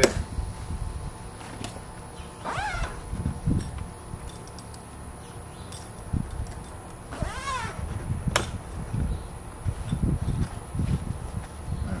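An animal calling twice, a few seconds apart, each a short cry that rises and then falls in pitch. Under the calls runs a low rumble of handling noise as a padded fabric cover is pulled over a portable fridge, with one sharp click near the middle.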